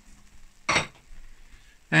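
One short clatter of kitchenware about two-thirds of a second in, followed by faint handling noise of a spoon and pot.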